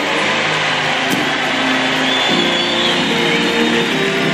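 Large crowd cheering and applauding in a big hall, a steady wash of noise, with held musical chords rising underneath from about halfway through.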